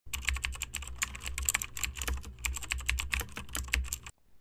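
Rapid, irregular clicking like fast typing on a keyboard, many clicks a second, over a steady low hum.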